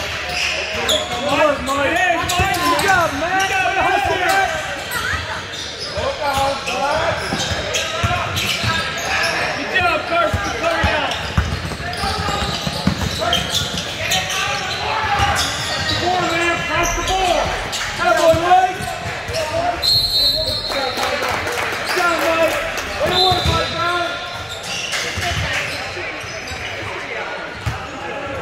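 Indoor basketball game on a hardwood gym court: the ball bouncing and players' and spectators' voices shouting and chattering in a large echoing hall. A referee's whistle sounds twice in the last third, stopping play.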